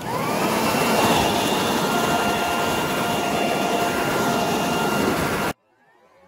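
Handheld leaf blower running at full speed with its nozzle jammed into a hole in a pumpkin, blowing out the pulp. It spins up to a steady high whine over the first half second, then cuts off suddenly near the end.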